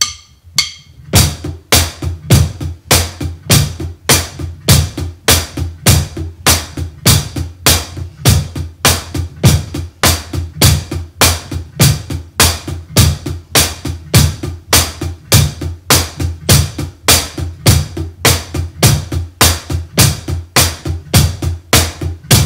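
Drum kit played in a steady groove at a brisk tempo, starting about a second in.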